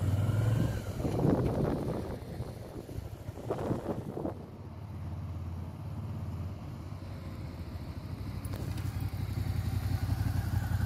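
Motorcycle engine running as the bike is ridden at low speed, with a few short revs rising and falling in the first half. It grows fainter as the bike moves away, then louder again near the end as it comes back.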